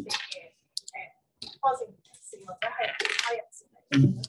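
A person speaking over a microphone in a language other than English, asking a question, with a short burst of crackling, hissy noise a little before the three-second mark.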